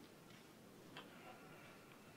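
Near silence: faint room tone with a single soft click about a second in.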